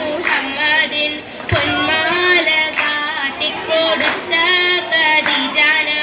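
A group of girls singing an Oppana song, a Mappila folk song, in unison, with a few sharp hand claps along the way.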